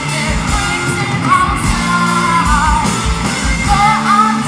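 Live heavy rock band: a woman sings a held, wavering melody over a steady drum beat with cymbals, distorted guitar and keyboard, in a large hall.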